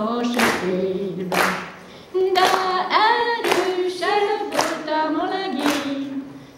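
Women's folk choir singing a Hungarian folk song without accompaniment, with a hand clap on the beat about once a second. There is a short break between phrases about two seconds in.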